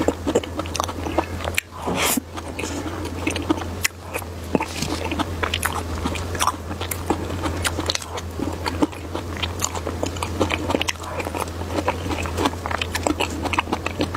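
Close-miked chewing and mouth sounds of someone eating soft whipped-cream cake: a dense, irregular stream of small clicks.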